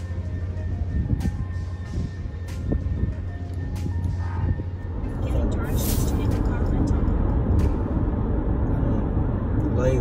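Road and engine noise inside a car moving on a freeway: a steady low rumble that gets louder about halfway through. Before that there is outdoor ambience with a low hum and scattered clicks.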